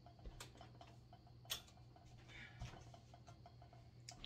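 Near-silent room with a low steady hum and faint scattered ticks; a sharper click about a second and a half in is a wall light switch being flipped off.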